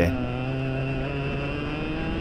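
Racing kart engine heard onboard, running steadily through a corner, its note slowly rising as the kart picks up speed.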